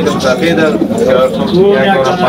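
Domestic pigeons cooing, with men talking over them.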